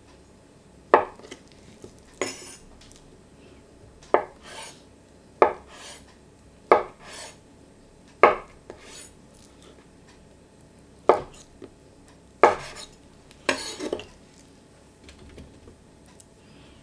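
A chef's knife cuts through a block of firm tofu, each stroke ending in a sharp knock of the blade on a wooden cutting board. There are about eight cuts spread unevenly through the stretch, most followed by a short scrape of the blade.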